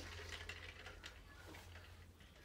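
Faint handling noise: a few light clicks and rustles as a plastic tumbler with a straw is picked up to drink, over a low steady room hum.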